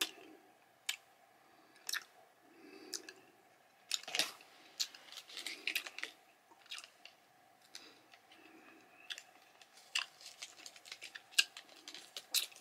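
A person chewing a Starburst Swirlers chewy candy stick with the mouth close to the microphone: soft chews about once a second with irregular wet mouth clicks and smacks between them.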